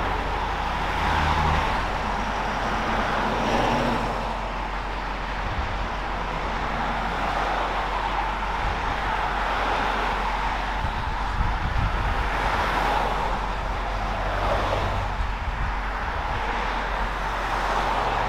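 Heavy highway traffic passing close by: a steady rush of tyre and engine noise as cars go past in the next lane, with the tow truck's own engine humming low underneath.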